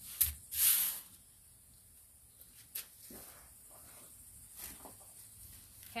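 Potting soil being handled and dropped into a plant pot by hand: a short hissing rustle near the start, with a couple of light clicks and soft rustles after it.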